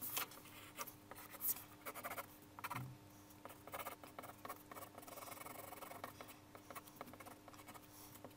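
Pencil scratching on paper in quick, irregular sketching strokes, with a steadier run of shading strokes about halfway through.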